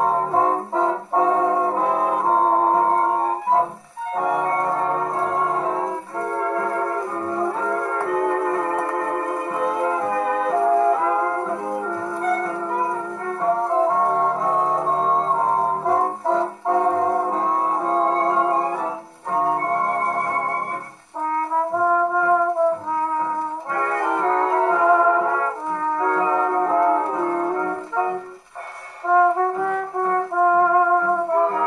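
Brass-led 1940s dance-band orchestra playing from a slightly warped 78 rpm shellac record on a wooden portable acoustic gramophone with a spearpoint steel needle. This is the instrumental passage before the vocal, with trumpets and trombones to the fore and no deep bass.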